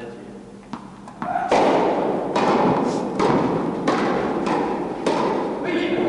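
Tennis rally on an indoor court: racket strikes and ball bounces come about every half second, each echoing in the hall, beginning about a second and a half in after a couple of lighter ball taps.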